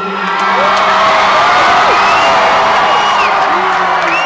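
Loud concert crowd cheering, with many whoops and shouts, as a rock band's song ends; the last of the band's low held sound dies away about a second in.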